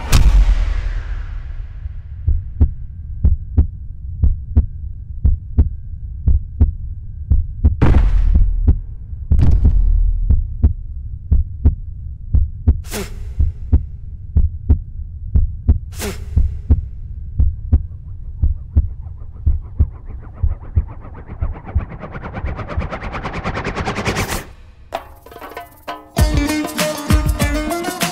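Fight-scene film score and sound effects: a steady low beat about twice a second, with four loud hits in the middle stretch. Near the end a rising swell builds and cuts off suddenly.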